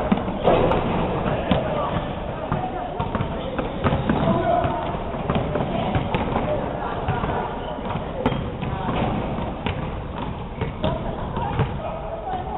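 A basketball bouncing and being caught and shot on a hardwood gym floor, with repeated short thuds, over indistinct background voices in a large hall.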